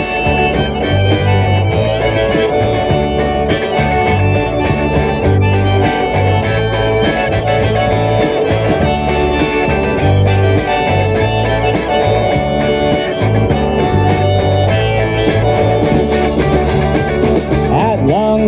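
Instrumental break of a live band playing outdoors: a harmonica solo over strummed guitars, electric bass and a hand drum, with a steady pulsing bass line.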